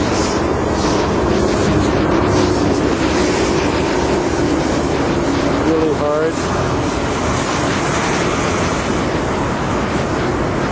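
Steady, loud rushing noise of wind and traffic on the microphone, with faint voices in the background and a brief rising chirp about six seconds in.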